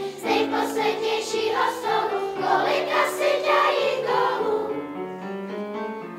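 Children's choir singing with piano accompaniment; the voices stop about four and a half seconds in and the piano plays on alone.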